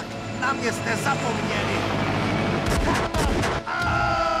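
Men shouting, then a rapid volley of sharp bangs like gunfire from a little under three seconds in until near the end.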